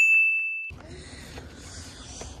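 A single high 'ding' sound effect: one steady tone that cuts off abruptly under a second in, followed by faint outdoor background noise.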